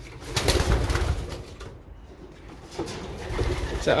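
Homing pigeons cooing in a loft, with a loud burst of rustling noise about half a second in.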